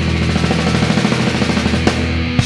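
Hardcore punk band playing live at full volume: distorted guitar, bass and drums hammering out a very fast, rapid-fire passage, with a sharp crash near the end.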